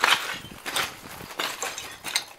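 Footsteps crunching over broken brick and debris: about four steps, the first the loudest.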